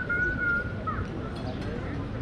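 Open town-square ambience of distant voices and street noise, with a long, clear high-pitched whistle-like call that dips slightly and ends about two-thirds of a second in, followed by a short bent chirp about a second in.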